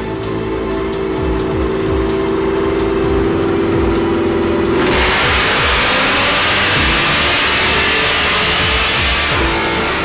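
Background music with a steady beat. About halfway through, a supercharged V8 CTS-V making a wide-open-throttle chassis-dyno pull comes in loud, its exhaust and engine note climbing steadily in pitch for about four seconds. The music takes over again shortly before the end.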